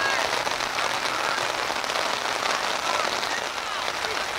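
Steady hiss of rain falling, with faint shouting voices in the distance now and then.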